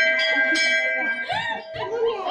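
Metal temple bell struck, its clear ringing tone dying away over about a second and a half, with voices coming in near the end.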